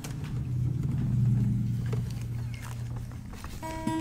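A low droning rumble, loudest in the first couple of seconds, then acoustic guitar notes start ringing near the end as a song begins.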